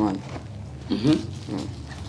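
A short vocal sound from a person about a second in, its pitch bending, over a steady low hum.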